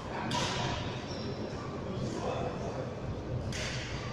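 Two sharp hits echoing in a large sports hall, about three seconds apart, with a brief high squeak between them, typical of shuttlecock strikes and shoe squeaks on a badminton court.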